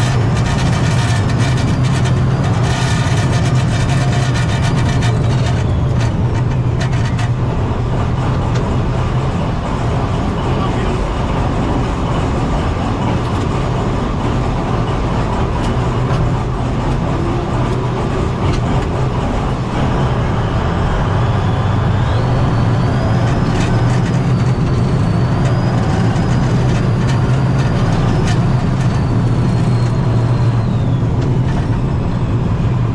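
Engine and running gear of a Buk M1 GM-569U tracked vehicle heard from inside its crew cab: a loud, steady low drone with clattering noise over it, and a faint high whine that wavers in pitch in the second half.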